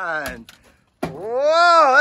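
A person's voice, wordless: a falling vocal sound, then a short dead-silent gap about half a second in, then a drawn-out vocal sound that rises and falls in pitch.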